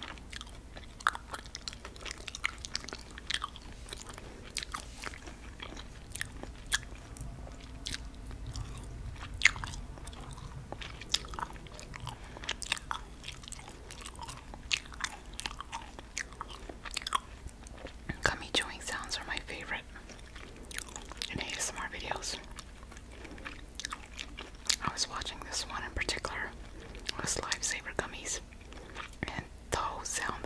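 Close-miked chewing of sour gummy worms: soft mouth sounds with many small, sharp clicks scattered throughout as the candy is bitten and chewed.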